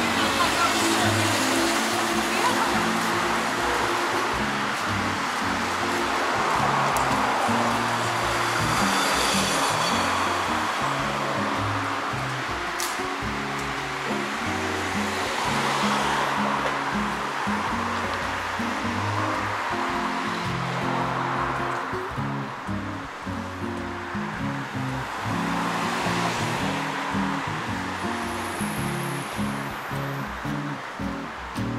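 Background music with low held notes that change every second or so, over a steady rushing noise of street traffic.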